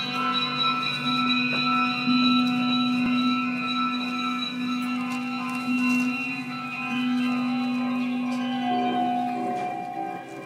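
Amplified electric guitars sustaining a steady drone of long held tones that ring on without a beat. New pitches come in near the end.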